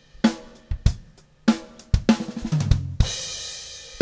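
Acoustic drum kit being played: a few spaced drum hits, a quick cluster of strokes about two and a half seconds in, then a cymbal crash that rings out and fades.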